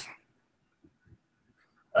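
Near silence in a pause between a man's sentences, with two faint ticks in the middle; his voice trails off at the start and resumes just before the end.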